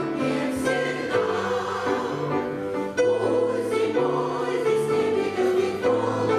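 Women's choir singing a lyrical song, several voices holding long notes together in harmony and moving from chord to chord.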